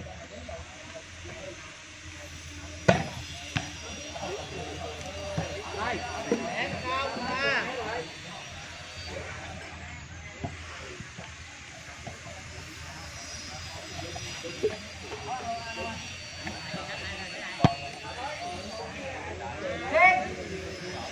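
Onlookers at an outdoor volleyball game chatting, with a few sharp smacks of the ball being hit, the loudest about three seconds in and another near the end.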